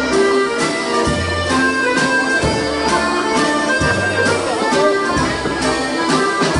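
Live Scandinavian folk dance music: two accordions and a nyckelharpa (keyed fiddle) playing a tune together over a drum kit, with held melody notes, repeated low bass notes and regular drum strikes.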